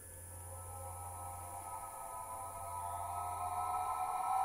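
Electronic synthesizer drone of several steady held tones, fading in and slowly growing louder, played by a robot arm on a synthesizer and heard through a hall's speakers, over a low steady hum.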